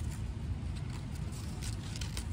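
Scissors snipping through folded paper in a few faint, short cuts, over a steady low rumble.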